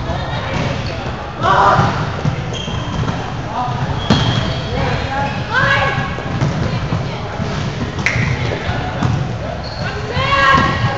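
Volleyball rally in a large echoing gym: players shout calls several times, the ball is struck with two sharp smacks about four seconds apart, and sneakers give brief high squeaks on the hardwood court, over a steady low rumble of the hall.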